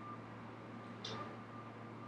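Quiet room tone with a steady low hum and faint hiss, and one brief faint hissy sound about a second in.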